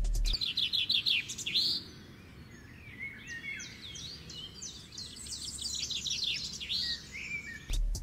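Songbird chirping: a quick run of about eight falling chirps in the first two seconds, then fainter, varied chirps and whistles.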